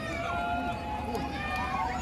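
Several distant voices shouting and calling at once in a field hockey stadium, over a steady low rumble of the crowd and venue.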